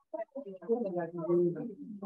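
A person's voice speaking indistinctly, too unclear for the words to be made out.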